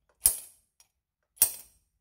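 Spring-loaded automatic center punch with a brass body and steel core firing twice against a metal post, two sharp snaps a little over a second apart, each marking a punch dot.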